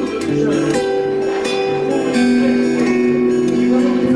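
Guitar played live: plucked melody notes ringing over a low, repeating bass line.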